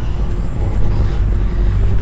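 Vehicle traffic: a steady low rumble with a faint hum.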